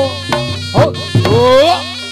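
Reog Ponorogo gamelan music: a slompret shawm playing a buzzy, wavering melody that bends up and down in pitch, over sharp kendang drum strokes and a steady low tone.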